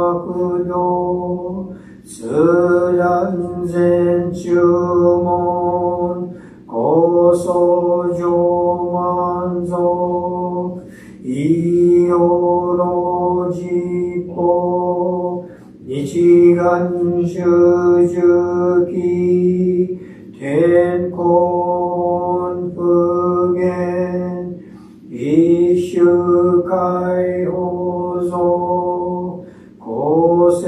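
A man chanting a Jodo Shinshu Buddhist sutra alone in Japanese. Each phrase is held on one steady note and lasts about four to five seconds, with a short breath between phrases.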